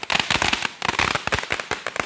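Ground firework fountain throwing out crackling sparks: a fast, irregular string of many sharp cracks and pops.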